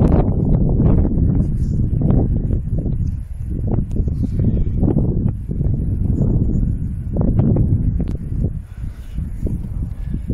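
Wind buffeting the microphone: a loud, gusting low rumble that rises and falls, dipping briefly around three and nine seconds in.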